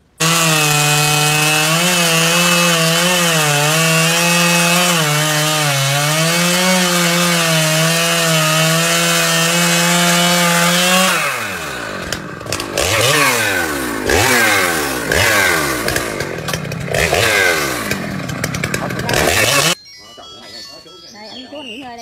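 Two-stroke chainsaw running at high revs, its pitch wavering slightly under load as it cuts. About halfway through, a chainsaw is revved up and down again and again while bucking a felled trunk into rounds. It cuts off suddenly near the end.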